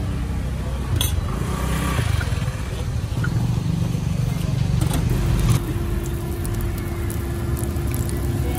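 Street traffic: motorbike and car engines running, with a few sharp clicks. About five and a half seconds in, the engine rumble gives way to a quieter steady hum.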